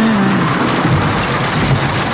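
Steady rain and car running noise heard from inside a moving car's cabin.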